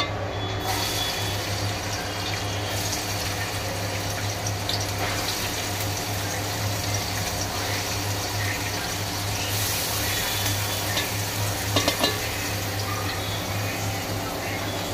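Chopped onions frying in hot oil in a large aluminium pot, a steady sizzle with a low hum underneath.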